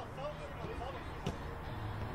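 Faint open-air football pitch sound: distant players' calls and shouts, with one sharp ball kick a little past the middle.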